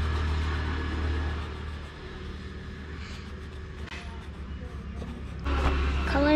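A steady low rumble with a hiss over it, louder for the first two seconds and then fading to a faint background.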